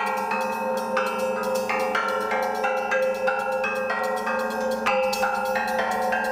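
Film soundtrack music: a melody of short pitched notes, about two or three a second, over two steady held low notes.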